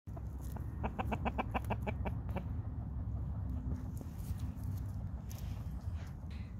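Chickens clucking: a quick run of about ten short clucks in the first couple of seconds, then a few scattered fainter ones, over a steady low rumble.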